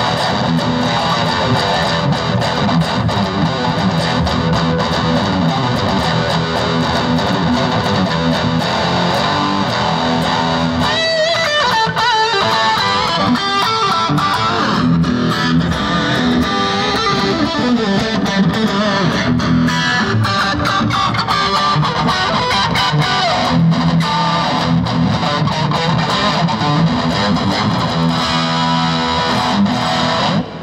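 Electric guitar played through a Laney Ironheart IRT Studio 15-watt all-tube head on its high-gain lead channel: heavily distorted riffing that turns, about eleven seconds in, into lead lines with pitch bends.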